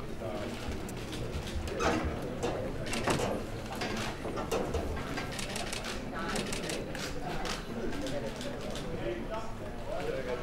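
Indistinct chatter of a crowded room, with quick runs of sharp clicks from press cameras' shutters firing as a fighter poses on the scale.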